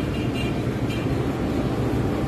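Steady low rumbling background noise, with no distinct events.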